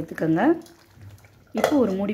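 Speech: a voice talking, broken by a quiet pause of about a second in the middle.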